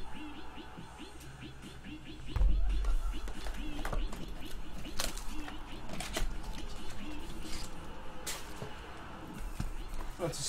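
Cardboard trading-card mini-box pulled from its display box and handled, with scratching and clicking of card stock against card stock, and a thump about two and a half seconds in. Faint background music plays underneath.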